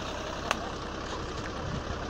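Truck engine idling with a steady low rumble. A single sharp click comes about half a second in.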